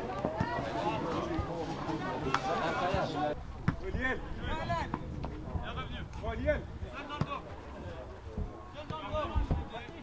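Short shouted calls from players on an outdoor football pitch during play, with a couple of sharp knocks of the ball being kicked.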